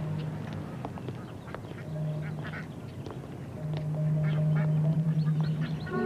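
Ducks quacking several times over a low, steady held tone that swells louder in the second half.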